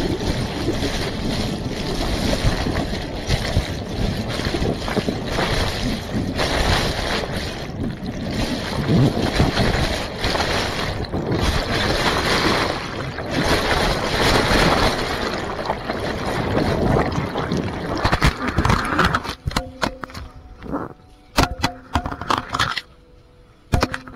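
Turbulent river water rushing and churning around a camera held underwater in a fast current, heard through the camera's own submerged microphone as a loud, dense, muffled rush. Near the end the rushing cuts away to a run of sharp knocks and clicks.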